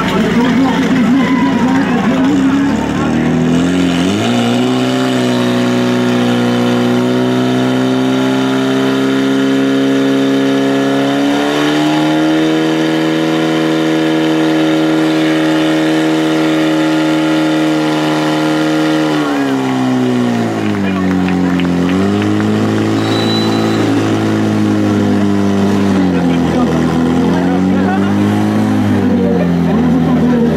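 Portable fire pump's engine revving up about four seconds in and running at high revs under load, pushing water through the hoses to the targets. Its revs drop about twenty seconds in, then rise and fall unevenly.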